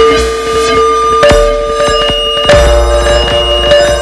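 Homemade kalimba played through a Eurorack modular synthesizer, giving electronic music of held, ringing tones over a deep bass. New notes come in about a second in and again about two and a half seconds in, the bass returning with them.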